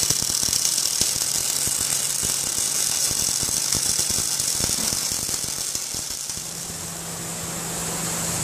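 MIG welding arc laying a continuous bead around a driveshaft tube as the shaft turns under a fixed torch, with a steady dense crackle and hiss. About six seconds in the crackle stops and a steady low hum takes over.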